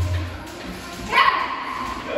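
A small dog gives a sharp bark about a second in, its pitch falling away after it.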